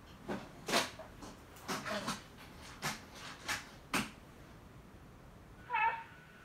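A baby making a run of short, breathy vocal sounds, about six in the first four seconds, then one brief, higher-pitched squeal near the end.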